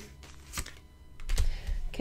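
A sharp click about half a second in, then a few soft knocks and taps in the second half.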